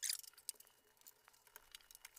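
A few faint, scattered clicks at low level, with a short hiss right at the start.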